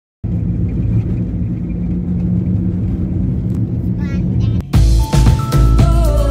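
Steady low engine and road rumble of a car driving, heard inside the cabin, with a brief high-pitched sound about four seconds in. Near the end it cuts suddenly to loud music.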